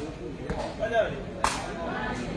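Sepak takraw ball kicked in a rally: a sharp crack about one and a half seconds in and a fainter hit about half a second in, with a short shout from a voice between them.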